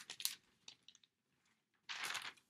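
Sheets of paper being handled and shuffled: a few short, soft rustles, the loudest right at the start and another just before the end.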